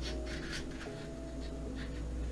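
Faint rustling of paper book pages under the reader's fingers, over a soft, steady background music tone.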